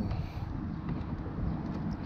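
Wind rumbling on the microphone, with the faint rub of a microfiber towel wiping spray wax across glossy car paint.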